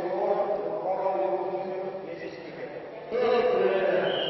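Male voices calling out in drawn-out, chant-like tones, becoming louder about three seconds in.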